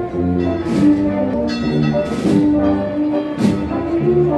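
A wind band of brass and woodwinds playing a slow processional march: sustained brass chords over a steady beat of percussion strokes about every second and a quarter.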